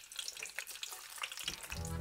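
French fries deep-frying in a pan of hot oil: a steady crackling sizzle full of small pops. Music comes in near the end.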